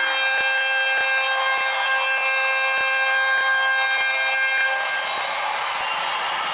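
Arena goal horn sounding a steady chord for about five seconds right after a goal, over a cheering crowd; the horn stops about five seconds in.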